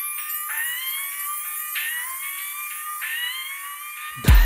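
Opening bars of a Kannada film song: a siren-like synth tone slides upward and restarts about every second and a quarter, over a high shimmer, with no beat or bass yet.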